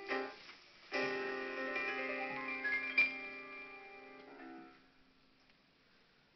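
Piano-like keyboard notes: a short chord, then about a second in a fuller chord with a few notes added over it, held and fading away near the end.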